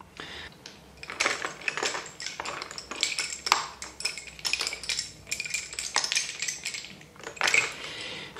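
Wooden lace bobbins clicking and clacking against one another as pairs are picked up and laid aside on a bobbin-lace pillow: an irregular run of light, sharp clicks.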